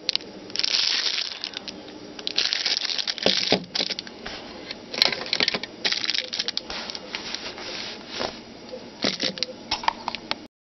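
Thin plastic bag around a handheld radio crinkling and rustling in irregular bursts as it is handled and pulled off, with a few sharp clicks.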